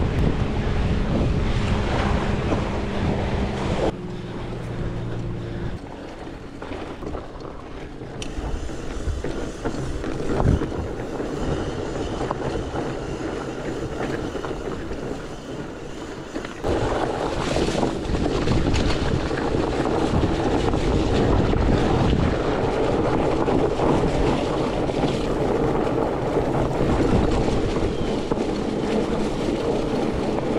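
Wind on the microphone mixed with the rolling and rattling of a fat bike on the move. Loud at first on packed beach sand, quieter over a rock slab with one sharp knock about ten seconds in, then loud again from about two-thirds of the way through on a dirt single track.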